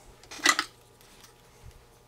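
A single sharp clink about half a second in, as a tool is handled on the workbench. It is followed by a few faint ticks over a steady low hum.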